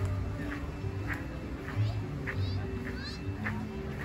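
Outdoor ambience of people talking at a distance over background music, with short high calls scattered through it.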